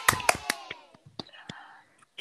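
A run of rapid hand claps that dies away in the first half second, followed by a few scattered clicks and a brief faint breathy sound.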